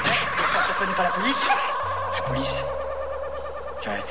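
A spoken vocal sample in a hardcore mix breakdown, a voice over steady held synth tones and a low bass note that changes pitch about halfway through.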